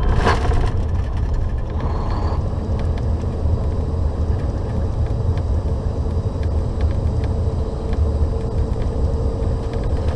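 Inside the cab of a 2015 Volvo 670 semi truck under way: a steady low drone of the diesel engine and tyres on the road, with a faint steady hum joining in over the last few seconds.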